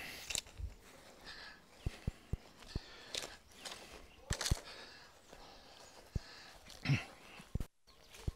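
Footsteps of a man walking across a grass lawn: soft, irregular thuds with some faint rustling.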